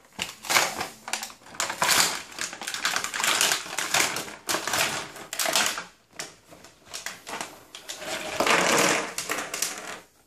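Clear plastic packaging film crinkling and a cardboard box being handled as a toy tea set is unpacked: a dense, continuous run of crackles and rustles with only brief pauses.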